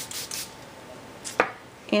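Quick rubbing strokes of a paper tag against a paper towel, about seven a second, stopping about half a second in, then one sharp click about a second and a half in.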